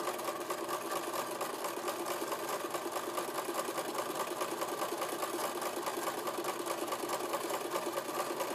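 Electric domestic sewing machine running steadily, its needle making a rapid, even stitching rhythm as it edge-stitches a folded hem.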